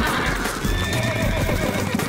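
Horses whinnying over hoofbeats; a shaky, falling whinny sounds about halfway through.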